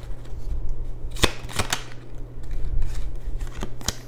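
Tarot cards being handled and shuffled, giving several sharp card snaps and clicks: a cluster about a second in and two more near the end. A steady low hum runs underneath.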